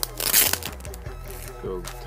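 A Yu-Gi-Oh booster pack's foil wrapper crinkling and tearing as it is opened: a short, loud rustling crackle in the first half second.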